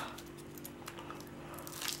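Faint crinkling of foil being peeled off a frozen Kinder Surprise chocolate egg, with a sharper crack from the frozen chocolate shell near the end.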